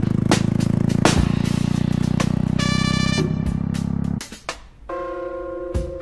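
Jawa motorcycle's single-cylinder engine running with a fast, even exhaust beat, mixed with music that has sharp hits. The engine sound stops about four seconds in, leaving a held musical chord.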